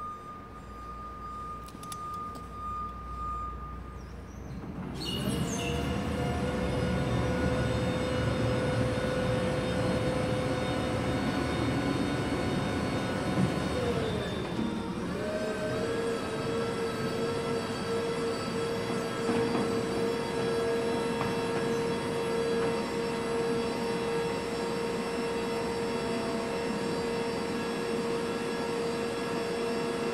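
Electric VNA man-up truck's hydraulic lift motor and pump whining steadily as the operator cab is raised up the mast. The whine starts about five seconds in, dips briefly in pitch about halfway, then runs on at one steady pitch; a thin steady high tone sounds for the first couple of seconds.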